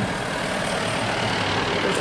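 Street traffic: a car driving past, a steady rush of engine and tyre noise.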